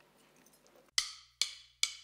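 Near silence for about a second, then three sharp percussive clicks at an even beat, a little under half a second apart. They open a music track that goes on into a full drum beat.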